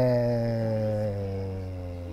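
A man's long, drawn-out hesitation vowel "ええー", one held note that slowly falls in pitch and fades.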